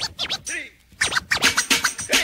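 Turntable scratching on a hip-hop record: short, quick back-and-forth sweeps of a record under the needle, coming thicker from about a second in, without a beat underneath.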